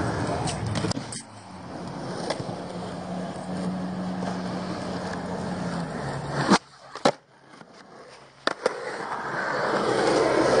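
Skateboard wheels rolling on concrete, a steady rumble. About six and a half seconds in comes a single sharp clack, then a quieter spell with a few small clicks, and the rolling builds up again near the end.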